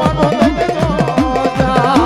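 Dakla folk music: a dak drum beats about three to four strokes a second, each stroke swooping up and down in pitch, over a deep thudding beat. A wavering melody line runs above it.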